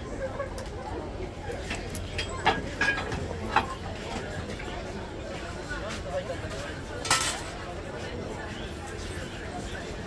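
Background chatter of voices with a few light clinks and knocks, and a brief hiss about seven seconds in.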